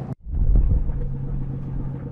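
Outdoor harbour ambience: a steady low rumble with a low hum, starting after a brief gap about a quarter second in.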